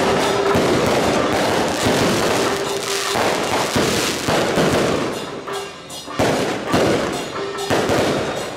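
A string of firecrackers going off in a rapid, dense crackle that thins and breaks up after about five seconds, with music underneath.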